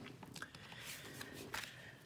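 Faint rustling and a few soft taps of stiff cardstock being handled as a folded card is opened out and laid flat.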